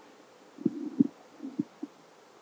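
A few soft, low thumps, about four in just over a second, in a pause between speech.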